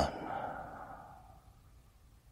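The tail of a long, sigh-like breath out, fading away over about a second and a half into near silence.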